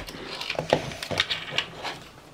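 Handling noise of a red plastic microphone shock mount being worked onto a helmet's side rail mount: a run of light, irregular clicks and rubs of plastic on plastic.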